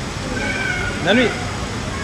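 Steady crowd background in an airport terminal, with one short, high call that rises and falls in pitch about a second in, like a voice or a meow.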